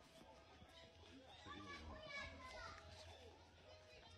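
Faint, distant voices, children's voices among them, over a low steady hum.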